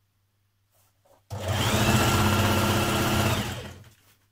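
Singer electric sewing machine stitching through two layers of fabric. It starts suddenly about a second in, runs steadily at speed for about two seconds, then slows and stops near the end.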